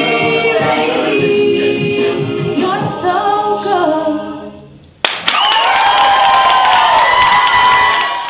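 An a cappella group singing a pop arrangement, voices only, closes and dies away about four to five seconds in. Right after a single click, the audience suddenly breaks into loud cheering and clapping.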